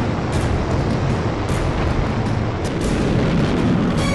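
Loud, steady rumbling roar with music under it, most likely the descent engines' roar in a replay of the Curiosity rover's powered descent to Mars.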